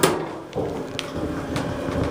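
Inside an Otis hydraulic elevator car: a sharp knock, then a steady low hum from the car, with a small click about a second in.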